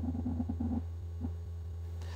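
A steady low hum with a few faint, short blips in the first second and one more a little past halfway.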